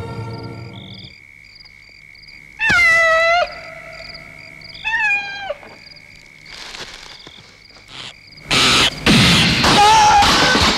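Film soundtrack: music fades out in the first second, leaving a steady high whine with short, regularly repeated chirps. Over it an animal cries out twice, loud calls that fall in pitch, about two seconds apart. A loud rushing noise starts near the end.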